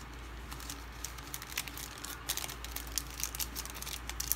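Clear plastic stamp packaging crinkling and crackling in a series of small, sharp clicks as it is handled and set down, over a steady low hum.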